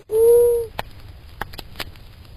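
An owl's hoot, one steady held note that ends about two-thirds of a second in. It is followed by the quiet crackle of a campfire, with a few sharp pops.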